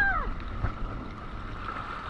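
Jet ski engine running steadily at low speed on the water, a steady hum with a faint whine over it. A brief rising-and-falling voice sound at the very start.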